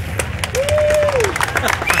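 Crowd applauding with scattered hand claps, and one voice in the crowd calling out a drawn-out note about half a second in.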